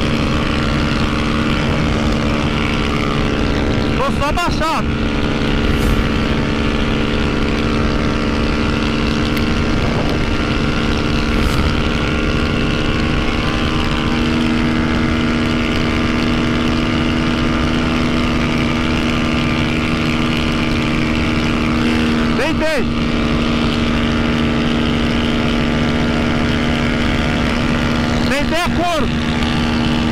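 Honda CB300F Twister's single-cylinder engine, fitted with a tuned camshaft, held flat out in sixth gear at top speed: a steady drone under heavy wind rush. A few brief rising-and-falling sweeps in pitch cut through, near 5 s, 23 s and 29 s.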